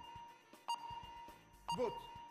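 Game-show countdown clock sound effect: short electronic beeps about once a second over a faint steady tone. A brief shouted voice comes near the end.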